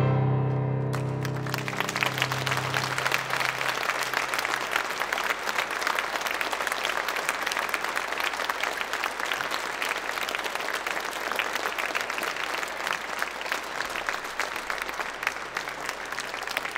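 A loud closing piano chord rings out and fades over the first few seconds. Audience applause starts about a second in and carries on steadily.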